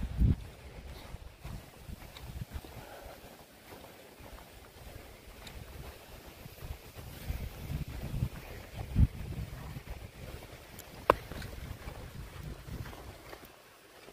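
Wind buffeting the microphone in uneven low gusts, with two sharp knocks in the second half.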